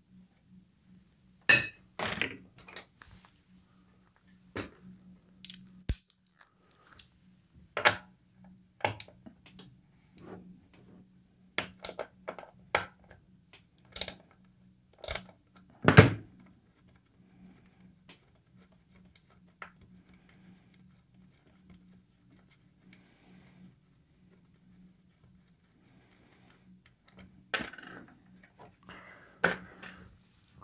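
Irregular sharp clicks, clinks and knocks of small tools and hardware handled against a vintage tube amplifier's metal chassis as its rear-panel quarter-inch jacks are worked on. A faint steady low hum runs underneath.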